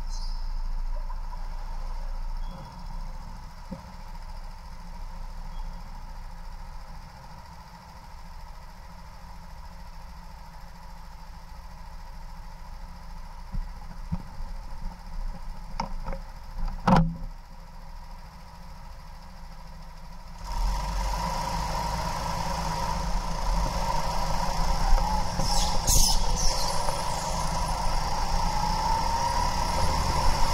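Go-kart running on an indoor track, heard from the driver's seat. It is quieter at first, with a sharp knock about 17 seconds in, then gets much louder about 20 seconds in as it picks up speed.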